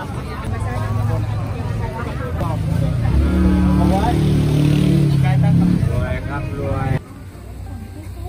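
Busy street-market ambience: people chattering nearby, with a motor vehicle's engine running loudly past in the middle, a steady low drone for about three seconds. The sound drops abruptly to a quieter background about seven seconds in.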